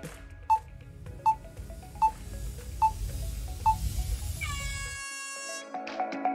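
Countdown sound effect: five short beeps about 0.8 s apart over a low drone, then a bright ringing tone near the end that marks the start of the timed shopping run. Music comes back in at the very end.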